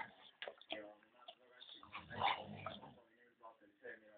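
American Staffordshire terrier eating, with wet lip-smacking and chewing clicks, and one louder voiced sound about two seconds in.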